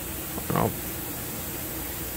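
A steady, even hiss, with one short spoken word about half a second in.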